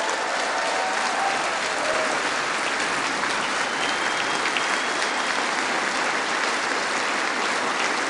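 Steady, sustained applause from a large crowd filling a big chamber, many people clapping at once.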